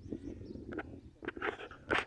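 A dog giving a few short barks in the second half, over a low steady rumble.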